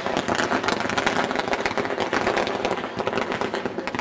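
Firecrackers going off on the ground, a rapid, irregular run of many small crackling pops.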